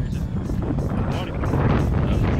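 Strong wind buffeting the microphone, a heavy low rumble, under background music with a quick steady beat.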